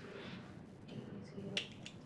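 A few faint sharp clicks, about three in the second half, the middle one the loudest, over low room sound with faint murmured voices.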